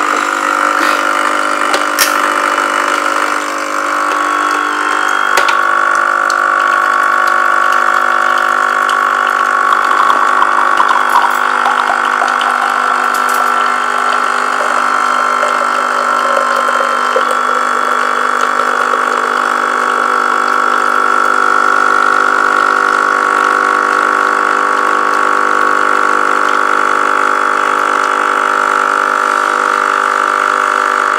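Capsule coffee machine (Nescafé Dolce Gusto type) brewing a cup: its pump running with a loud, steady hum and whine while coffee streams into the cup.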